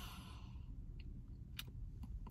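A man's soft breath, fading out in the first half second, then low hum in a car cabin with a couple of faint clicks a little past the middle.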